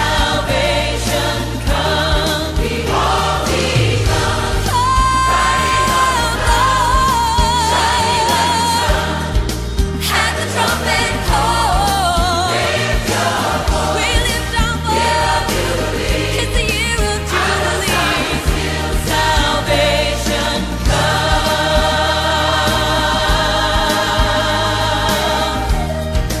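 Gospel choir music: voices singing over a band with a steady beat and bass, with sung notes held long and wavering.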